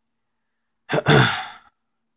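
A man clearing his throat once, a short breathy rasp starting about a second in, after a second of dead silence.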